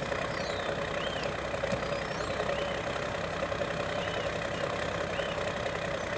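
Steady hiss and drone as compressed air is fed through a chuck on the valve into a skid-loader tire whose bead has just been seated, with an engine-like hum underneath. A few faint high chirps come and go.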